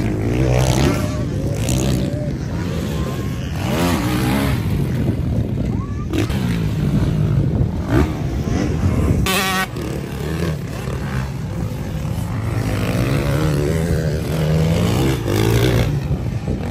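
Motocross bikes racing on the track, their engines revving up and falling away again and again as riders accelerate, jump and pass.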